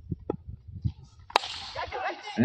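A single sharp crack of a cricket bat striking the ball, about a second and a half in.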